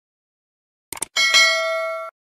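Two quick clicks, then a notification-bell sound effect rings for about a second and cuts off sharply: the bell 'ding' of a subscribe-button animation.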